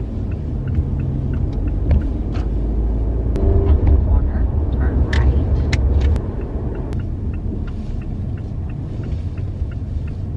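Car cabin noise from inside a moving car: a steady low rumble of engine and tyres that swells for a few seconds in the middle, then eases. A faint, regular ticking and a few small clicks sound over it.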